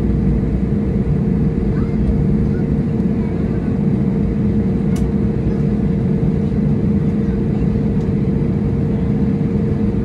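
Cabin noise of an Airbus A321neo taxiing after landing: a steady low rumble from the idling CFM LEAP-1A turbofan and the wheels rolling on the taxiway, with a steady hum running underneath. A faint click about halfway through.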